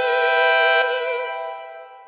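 Background music: one long held note on a reedy wind instrument, wavering slightly in pitch, that fades away over the last second.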